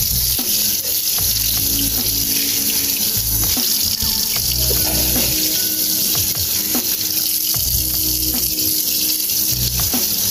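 Tap water running steadily into a stainless steel sink and splashing over eggplants as gloved hands rub them clean.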